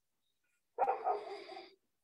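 A dog gives one drawn-out bark of about a second, starting suddenly and fading away, heard over a video call's audio.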